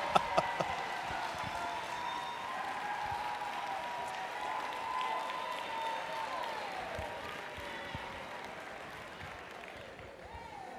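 Large audience applauding: rhythmic clap-along clapping breaks up in the first half-second into steady, scattered applause that slowly dies down.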